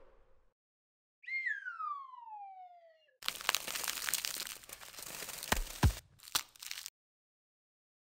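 Sound effects: one falling tone sliding from high to low over about two seconds, then about four seconds of dense crunching and crackling with sharp clicks, a scalpel scraping through a gritty crust on skin, which cuts off suddenly.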